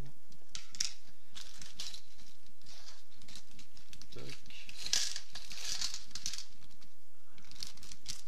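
Clear plastic parts bag crinkling and rustling as it is handled and emptied, with small resin kit parts clicking into a plastic tub. The rustling comes in quick short bursts and is loudest about five to six seconds in.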